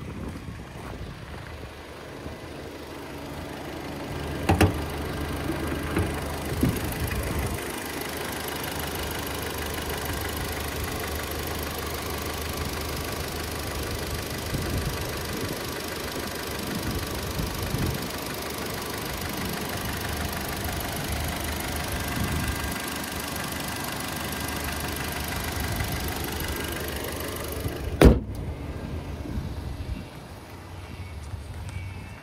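2012 Kia Sportage's 2.4-litre four-cylinder engine idling steadily, heard under the open hood, with a knock about four seconds in. Near the end a loud bang, the hood being shut, after which the engine is quieter.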